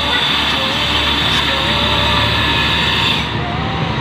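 Small step-through motorcycle engine running close by, steady, its higher rattle falling away about three seconds in.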